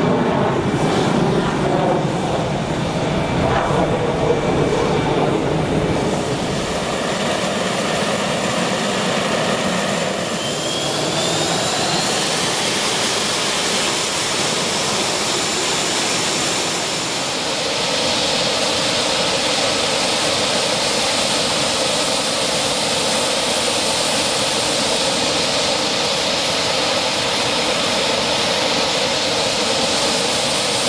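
Military jet engines running on an airfield: a loud, steady jet rush, with a rising whine about ten seconds in and a change in tone about seventeen seconds in.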